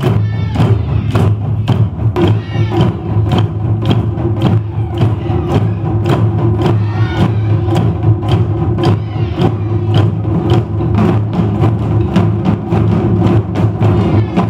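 Taiko drum ensemble playing with bachi: nagadō-daiko on stands and shoulder-slung okedō-daiko struck together in a steady, driving rhythm of about four strokes a second, with the drums' deep ring sustained under the hits.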